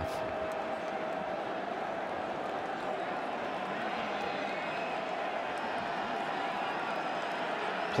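Steady stadium crowd noise: the even murmur of a large crowd of spectators.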